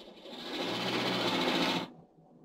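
A car driving up, its engine and tyre noise rising in level as it comes closer and cutting off suddenly near the end.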